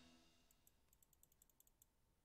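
Near silence, with about a dozen faint, quick clicks of computer input over a second and a half, after the last of the stopped music has faded out.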